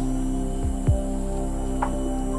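Background music: a steady synth drone with a deep, falling bass thump about a second in.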